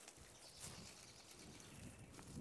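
Near silence: faint outdoor ambience with a low rumble.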